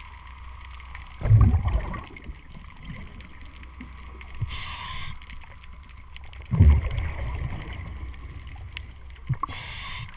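A scuba diver breathing through a regulator underwater. Exhaled bubbles rumble about a second in and again about six and a half seconds in, each lasting under a second. A short hiss of inhalation through the regulator comes between them and again near the end.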